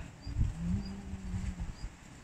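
A person's voice giving one long call held at a steady pitch for about a second.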